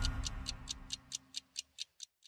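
The closing theme music of a TV magazine show fades out during the first second, leaving a clock-like ticking of about four to five ticks a second.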